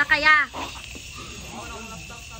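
A single short cry from a voice, about half a second long, its pitch arching up and then falling, followed by faint background sounds.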